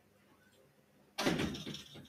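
A sudden knock or bump about a second in after a quiet stretch, with a short rustling tail as it dies away.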